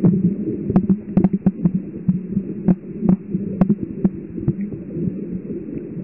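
Underwater recording: a steady low rumble and hum of water pressing on the microphone, pulsing unevenly. It is broken by irregular sharp clicks, one to three a second.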